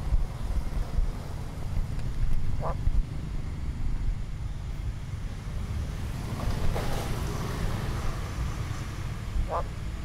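A frog giving two short croaks, about seven seconds apart, over a steady low rumble of wind on the microphone. A brief, noisier sound comes a little past halfway.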